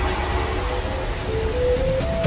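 Cinematic film soundtrack: a steady low rumble and airy hiss, with a slow melody of held notes entering about a second in and stepping upward.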